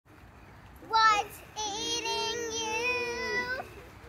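Children singing a short intro: one brief note about a second in, then one long held note of about two seconds.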